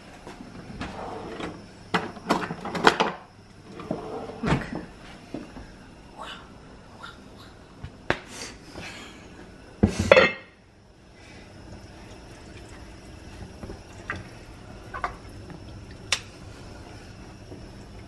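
Kitchen handling noises: a kitchen cabinet opened and shut, and a ladle clattering against an enamelled cast-iron pot. They come as a run of separate knocks, the loudest about ten seconds in.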